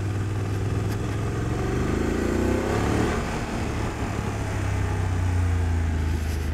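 BMW F800 GS parallel-twin engine pulling in second gear as the bike speeds up gently, its steady note rising a little in pitch partway through.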